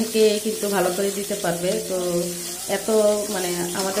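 A woman talking over the sizzle of fish pieces shallow-frying in oil in a metal karahi, a spatula turning them.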